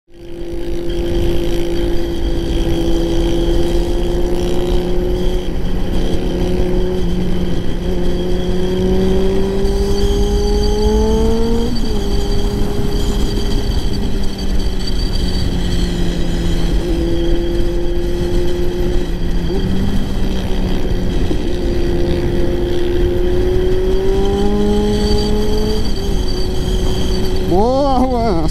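Kawasaki Z900 inline-four with a full aftermarket exhaust, cruising on the highway with wind buffeting the microphone. The engine note holds nearly steady and creeps up slowly, dropping sharply about twelve seconds in and again near the end as the throttle is eased.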